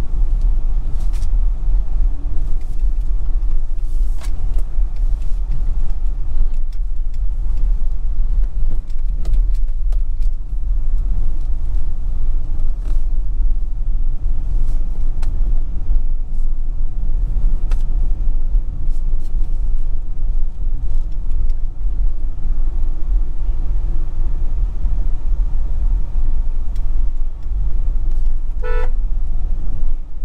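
Vehicle driving along a rough country road: a steady, loud low rumble of engine and tyres. A brief beep sounds near the end.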